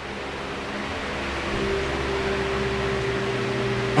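A steady low hum with a hiss, slowly growing louder, with a steady higher tone joining about one and a half seconds in.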